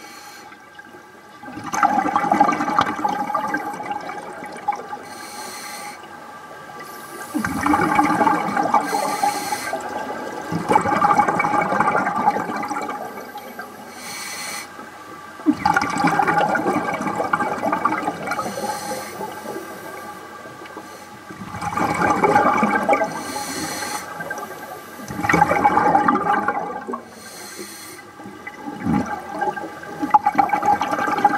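A scuba diver's regulator exhaust bubbles gurgling past an underwater camera in recurring bursts of two to three seconds, about six times, with quieter breathing in between.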